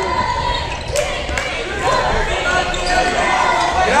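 Basketball bouncing a few times on a hardwood gym floor, with players and spectators calling out in the large gym.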